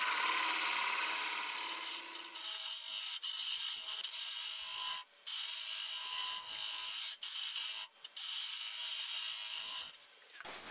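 A small hollowing tool cutting into wood spinning on a Laguna Revo 1836 lathe: a steady scraping hiss over the lathe's hum, broken by a few brief silences about five seconds in and twice around seven to eight seconds.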